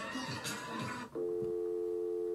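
A steady electronic test tone, several pitches held together, starting suddenly about a second in with a color-bars test-pattern screen. Before it, the tail end of the compilation clip's mixed audio.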